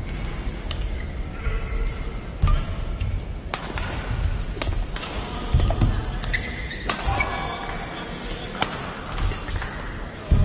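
Badminton rally: rackets hitting a shuttlecock, sharp cracks about every one to one and a half seconds, over the steady hum of an indoor arena.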